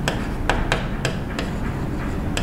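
Chalk on a blackboard while writing: a handful of sharp taps and short scrapes as the letters are formed.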